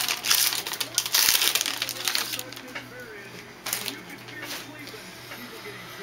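Trading card pack wrapper crinkling and tearing as it is opened, dense for about the first two seconds, then a few softer handling rustles.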